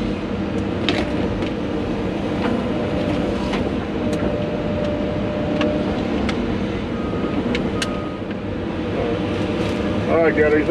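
Excavator's diesel engine and hydraulics running steadily, heard from inside the cab, with scattered sharp knocks and cracks as the bucket and thumb move broken wood debris.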